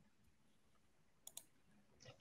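Near silence, broken by two faint short clicks in quick succession a little past the middle.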